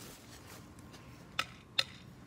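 Two sharp taps of a stick against a young tree's trunk, about half a second apart.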